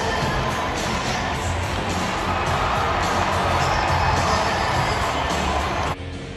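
Large stadium crowd cheering over loud music playing through the stadium sound system.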